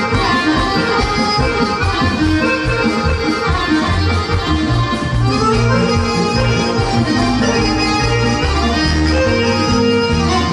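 Live Serbian folk band music led by accordions, playing an instrumental passage over bass and drums.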